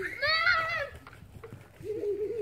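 A child's high-pitched voice calling out once, about half a second long, rising and then falling in pitch, followed near the end by quieter talking.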